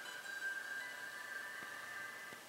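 Faint startup music from a Samsung Galaxy S II's small built-in speaker as the phone boots: a few thin, high, held tones.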